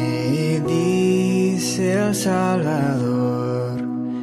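A male voice sings a slow, held worship melody over sustained piano chords.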